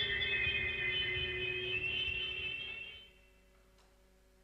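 Live electronic music played on synthesizers: sustained high drone tones over a low rumble, fading out about three seconds in.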